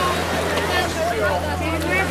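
Steady low drone of an outboard motor idling on a small boat, under several people talking.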